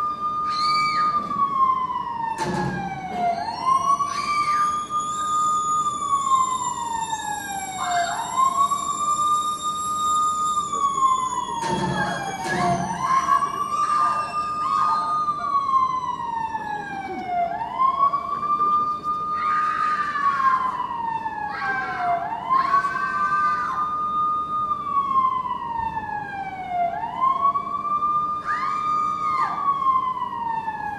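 Emergency-vehicle siren wailing: each cycle climbs quickly, holds briefly, then slides down, repeating about every four to five seconds. A few short knocks sound over it.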